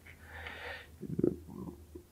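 A man drawing an audible breath in a pause between sentences, followed by a few faint, short low mouth or throat sounds before he speaks again.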